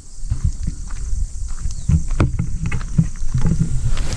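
Wind buffeting a handheld camera's microphone: irregular low rumbling with scattered thumps.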